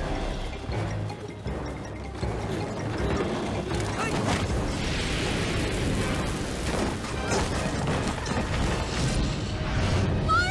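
Cartoon soundtrack: dramatic background music with deep booms and a few sharp crash-like hits scattered through it.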